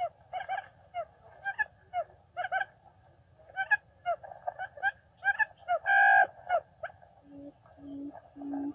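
Quail calling at a trap: quick short chirps repeated several times a second, with a louder, longer call about six seconds in. A low, evenly repeated hoot starts near the end.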